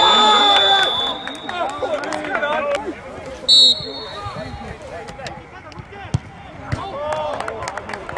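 Referee's whistle: a long blast that ends about a second in, then a short sharp blast about three and a half seconds in, over players shouting across the pitch. A single sharp knock about six seconds in, the ball being kicked.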